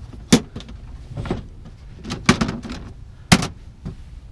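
Gray hard-plastic storage tote lids being flipped and knocked while gear is shifted inside the boxes: several sharp plastic clacks roughly a second apart.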